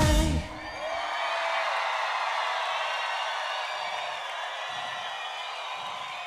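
The last beat of a live chalga (Bulgarian pop-folk) song ends abruptly about half a second in, and a concert crowd carries on cheering and whooping.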